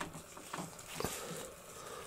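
Faint handling of a plastic Skeletor action figure as a plastic mask is pressed onto its head: light scuffs and small clicks, the sharpest about a second in.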